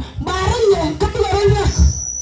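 A voice amplified through a loudspeaker system, with irregular low thuds underneath.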